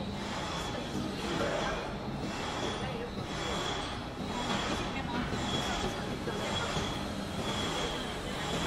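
Automatic 12-nozzle candle wax filling machine running, its mesh conveyor carrying empty glass cups toward the filling pumps: a steady mechanical hum with a faint high whine that comes and goes.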